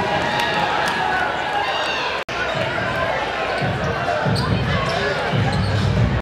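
Crowd voices and chatter echoing in a school gymnasium during a basketball game. The sound cuts out for an instant about two seconds in, and several low thuds follow in the second half.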